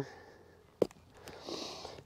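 A single short sharp click just under a second in, then a soft intake of breath: a person's mouth click and inhale.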